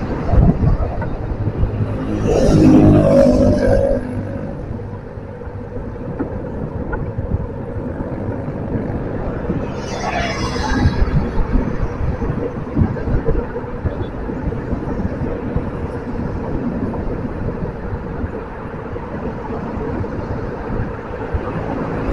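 Steady road and engine rumble of a vehicle driving through light city traffic, with louder swells from nearby vehicles about two to four seconds in and again around ten seconds in.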